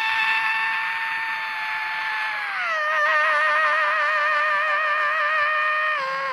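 A singer holding one long note with no accompaniment: steady at first, then sliding down to a lower note a little before halfway, which he holds with a vibrato.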